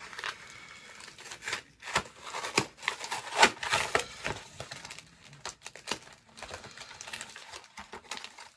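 Crinkly plastic packaging of a trading-card three-pack being torn open and handled: irregular sharp crackles and rustles, loudest about halfway through and thinning out near the end.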